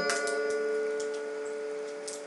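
Acoustic guitar chord struck at the end of a song and left ringing, slowly fading, with a few faint ticks about half a second apart.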